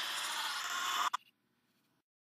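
Steady hiss-like noise from played-back reversed audio, cutting off with a click just over a second in.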